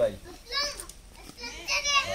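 A young child's high-pitched voice, two short utterances, one about half a second in and one about a second and a half in.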